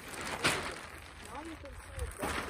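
Large sheet of black plastic sheeting rustling and crinkling as it is pulled and spread out, with one louder crackle about half a second in.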